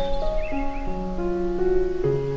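Slow, soft piano music with held notes, mixed with nature sounds: a short bird call about half a second in.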